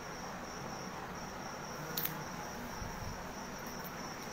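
Steady high-pitched trill over a low hiss, with one brief click about two seconds in.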